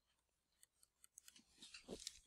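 Near silence, with a few faint, short ticks in the second half: a stylus tapping on a tablet while writing.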